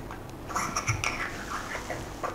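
Fine-threaded screw-on macro element of a clip-on wide-angle lens being threaded back in by hand, right at the camera: faint scratching and small clicks starting about half a second in.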